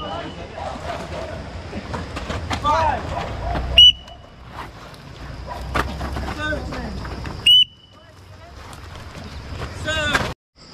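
Two short, sharp whistle blasts about four seconds apart, a trainer's signal whistle timing a group exercise drill, over scattered voices and a steady high insect trill.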